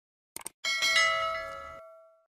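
A quick double mouse click, then a bright bell chime that rings out and fades over about a second and a half: the click-and-notification-bell sound effect of a subscribe animation.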